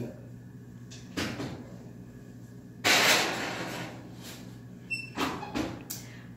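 Kitchen oven being loaded: a knock about a second in, a longer scraping rattle of the oven door and rack about three seconds in as a glass baking dish goes in, then a couple of knocks near the end as the door is shut.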